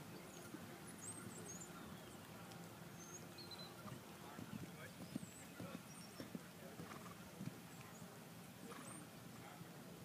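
Faint, dull hoofbeats of a horse moving over soft arena footing, coming as irregular knocks that are thickest around the middle of the stretch.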